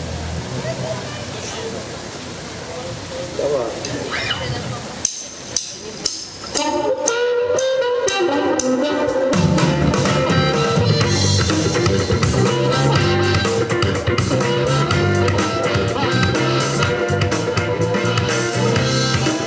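A blues band starts a song. After a few seconds of low crowd noise and a few sharp clicks, a harmonica comes in holding a long note over electric guitar and drums about six seconds in. The bass and full drum kit join about three seconds later.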